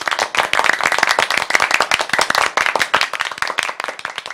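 Applause: many hands clapping in a dense, rapid run that starts suddenly and eases off near the end.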